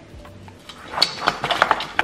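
Faint background music, then from about a second in a quick run of metallic clinks and clatter from a stainless steel saucepan being picked up off the counter.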